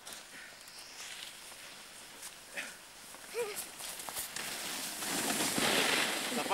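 Snowboard sliding over snow: a faint hiss that swells into a louder, even scraping hiss near the end as the board carves close by.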